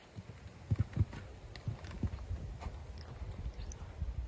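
Hoofbeats of a cantering horse on a soft arena surface: a run of dull, low thuds, the loudest pair about a second in.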